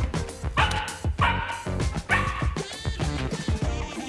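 Samoyed puppy barking three times in quick, high yaps, over background music with a steady beat.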